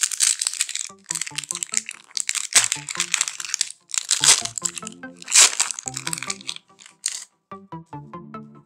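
A Pokémon TCG booster pack's foil wrapper crinkling loudly in several bursts as it is torn open and pulled away, with background music underneath.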